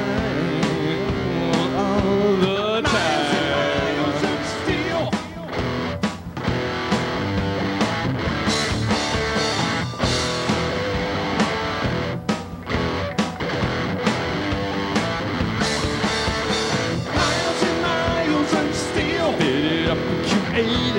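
Live rock band playing an instrumental passage of a psychobilly-style song: electric guitars over drums, with a guitar lead bending notes a few seconds in.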